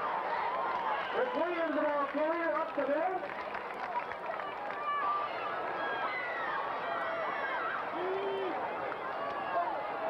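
Football spectators shouting and calling out over a steady crowd murmur. The loudest voice calls are about one to three seconds in, with a shorter shout near the eight-second mark.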